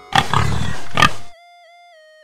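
A pig grunting loudly for just over a second, then a few held notes of background music.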